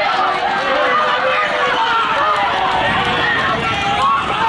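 Crowd of spectators shouting and cheering at a horse race, many voices overlapping, with the drumming of galloping hooves on the dirt track growing stronger in the second half.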